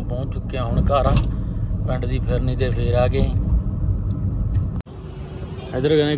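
Steady low rumble of a Maruti Suzuki Swift on the move, heard from inside the cabin, under a man talking. About five seconds in it cuts off abruptly to quieter outdoor street ambience with voices.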